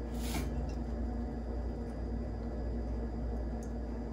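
Quiet room tone carrying a steady low hum, with one brief soft hiss just after the start.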